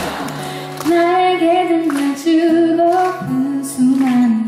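A woman singing a slow melody with long held notes over a strummed acoustic guitar; the voice comes in about a second in.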